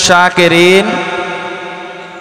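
A man's chanted Arabic recitation over a loudspeaker system; his phrase ends about a second in and the sound then fades away slowly in the echo.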